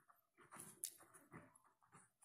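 Near silence, with a few faint short scratches and one click from a ballpoint pen writing on paper.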